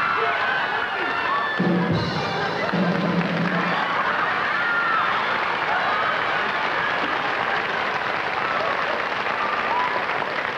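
Studio audience laughing and applauding loudly and steadily, a long sustained outburst.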